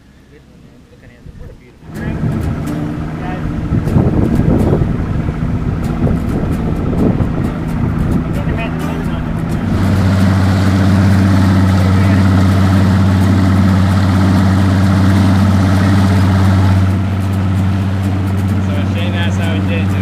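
Outboard motor on a bass boat, coming in suddenly about two seconds in and running unevenly at first. From about ten seconds in it holds a steady drone at speed, with the rush of water and wake over it, and eases off slightly near the end.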